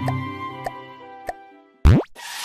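Cartoon background music with held notes fading away, two short plop sound effects about half a second apart in the middle, and a quick rising sweep near the end.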